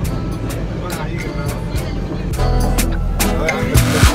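Background song with a steady drum beat and a vocal line.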